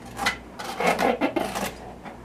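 Cardboard rubbing and scraping as a small box is opened and a heat-powered wood stove fan is pulled out of it. There is a short scrape just after the start, then a busier stretch of rustling in the middle second.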